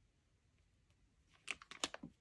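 Fingers and long nails handling a paper sticker on a planner page. Near quiet, then about a second and a half in comes a quick cluster of small clicks and paper crackles as the sticker is pressed down.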